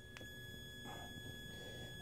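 Faint, steady high-pitched whine from a pulse-driven toroidal transformer circuit running at about 1.6 kHz, with a fainter overtone above it. There is one soft click just after the start.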